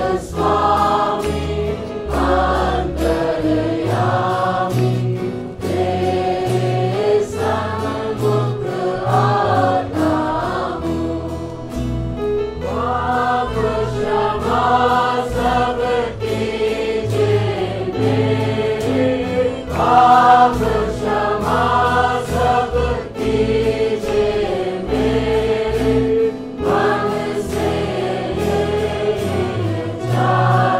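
Gospel-style choir singing a worship song over instrumental backing with a steady bass line.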